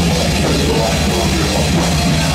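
Live rock band playing loudly and steadily: amplified electric guitar, electric bass and drum kit with cymbals.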